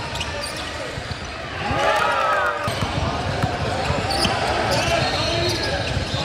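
Basketball bouncing on a hardwood gym floor during play, with sneakers squeaking in short sweeps and people talking in the background.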